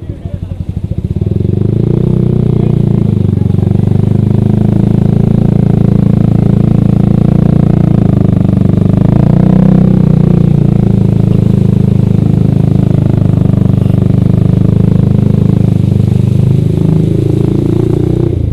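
Yamaha R15 V3's single-cylinder engine through an aftermarket Ronin Katana SE exhaust, running at low speed in traffic. It drops to a slow, separate-pulsed putter near the start, then picks up and holds a steady drone.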